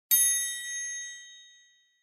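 A single high-pitched chime that rings out and fades over about a second and a half: the page-turn signal of a read-along picture book.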